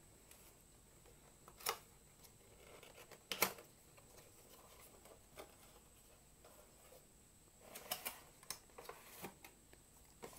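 A cardboard retail box being opened and a clear plastic packaging tray slid out by hand: scattered light rustles and clicks of card and plastic, the sharpest about three and a half seconds in and a cluster near the end.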